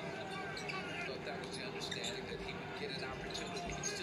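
Basketball game broadcast playing at low level: a ball bouncing on a hardwood court, with a commentator's voice faintly under it.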